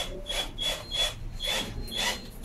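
Rhythmic rasping strokes of a hand tool worked against wood, about three strokes a second, each with a brief high squeak.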